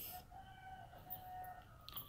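A faint rooster crowing in the distance: one long, steady call lasting about a second and a half.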